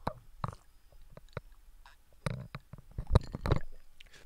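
A person drinking water from a glass: sips and swallowing gulps heard as a string of short, separate clicky sounds, the loudest about three seconds in.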